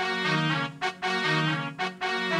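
Yamaha PSR-340 electronic keyboard playing a brass voice: a melody of held notes over left-hand chords, in short phrases with brief breaks about a second apart.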